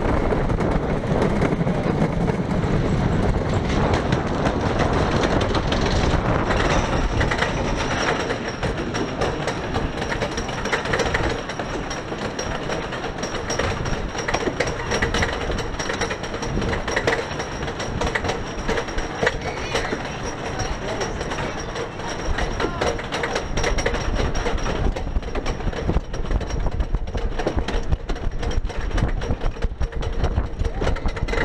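Wooden roller coaster train (Knott's GhostRider) rumbling along its wooden track, then about six seconds in climbing the lift hill with the lift chain clattering steadily under the cars.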